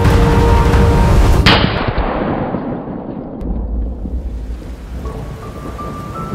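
Background music, broken about a second and a half in by a single shotgun blast that cuts the music off. The blast dies away slowly into a low rumble, and music comes back softly near the end.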